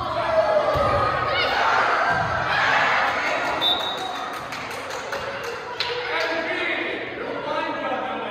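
Kids shouting and calling out during a volleyball rally in a gymnasium, with a few sharp thuds of the volleyball being hit.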